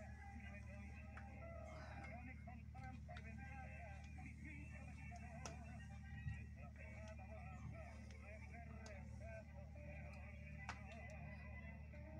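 Faint, scattered light clicks of a small screwdriver against the metal parts of a sewing machine, with a small knock about six seconds in, over a low steady hum and faint background voices or music.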